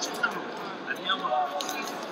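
Scattered shouts and voices from people around a wrestling mat in an arena, with a couple of brief sharp sounds.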